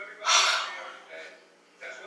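A woman's loud sigh, one long breath that fades away over about a second, then a short, softer breath near the end.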